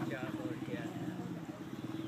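A steady, low engine hum with an even pulsing beat, like a motor running at idle.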